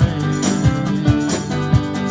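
A live rock band playing: strummed acoustic guitar chords over a steady drum beat.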